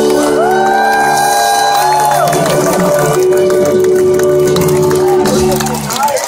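Live band holding a long sustained chord that stops just before the end, with the crowd cheering and someone whooping near the start.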